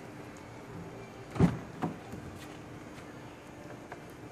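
Car door of a 2013 VW Beetle convertible being opened: its latch releases with a sharp clunk about a second and a half in, followed by a second, lighter knock.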